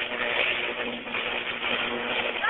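Electrical fault current arcing through a burning tree that touches a power line: a steady hiss with a faint even hum underneath, heard through a phone's thin audio. The fault grows as the charring wood becomes more conductive.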